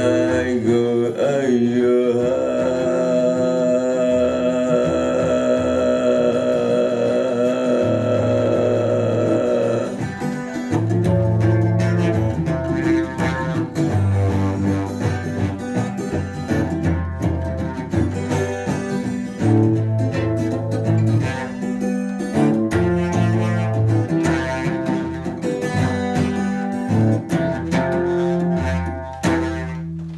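Live acoustic guitar and voice: a long held sung note over strummed guitar for about the first ten seconds, then the guitar alone in a rhythmic, percussive strummed outro with low bass notes, fading out near the end.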